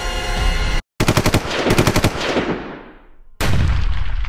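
Film-trailer soundtrack: a rising swell cuts to a moment of silence, then a rapid burst of gunshots rings away over a couple of seconds. Near the end a second loud hit starts and rings on.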